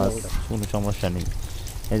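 Water pouring and trickling from a wet mesh net into an aluminium pot of water holding snakehead fry, under a man's speech.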